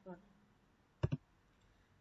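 A sharp double click about a second in, the sound of the slide presentation being advanced on the computer; otherwise quiet room tone.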